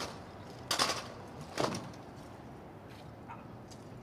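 Two sharp crashes about a second apart from a massed rank of soldiers moving their rifles together in a present-arms drill for a royal salute.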